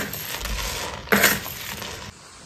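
Small black pebbles tipped from a metal spoon onto flatbread dough, landing in a rattling scatter of clinks. One scatter is dying away at the start and another comes about a second in. The stones cover the bread for baking.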